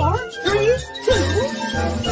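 Bouncy children's background music: a pulsing bass note about twice a second under tinkling jingle sounds and swooping, sliding notes.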